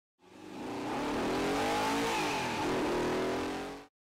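Car engine at speed with rushing road and wind noise, its pitch rising and dipping as it revs. The sound fades in at the start and cuts off abruptly near the end.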